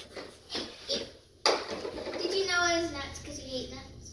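Children laughing and squealing: a few short laughs, then a sudden louder outburst about a second and a half in that rises into a long high squeal.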